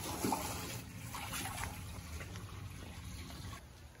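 Garden hose running into an empty concrete spa basin, water splashing and trickling as the hot tub begins to fill. The sound cuts off shortly before the end.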